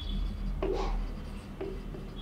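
Marker writing on a whiteboard: a few short scratchy pen strokes, about half a second and a second and a half in.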